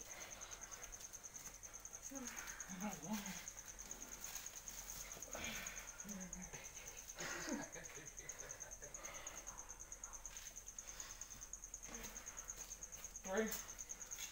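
An insect trilling steadily, a high, fast-pulsing buzz that holds unchanged throughout, with faint voices and handling sounds underneath.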